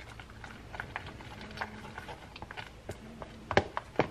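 A utensil stirring and scraping thick cream cheese and dip mix in a plastic container, making a run of irregular small clicks and taps against the plastic, with a few louder knocks near the end.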